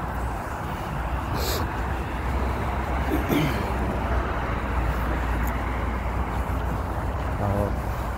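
Steady road traffic noise from cars passing on the street alongside, a low continuous rumble.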